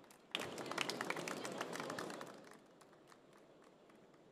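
Brief, scattered applause from a small audience, starting about a third of a second in and dying away after about two seconds, as the talk ends.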